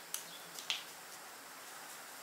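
A few small sharp clicks from handling a bundle of baby's breath (gypsophila) sprigs: two louder ones about half a second apart, with fainter ones around them.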